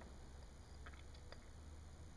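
Near silence: a faint low room hum, with a few faint soft clicks about a second in as fingers work a small piece of modelling clay.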